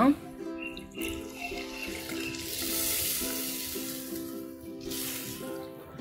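Water poured into a clay pot of hot fried masala, sizzling for a few seconds as it hits the oil, while a wooden spatula stirs the mixture into a gravy. Background music with steady notes plays throughout.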